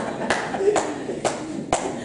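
Hand claps in a steady rhythm, about two a second, four of them, with faint voices underneath.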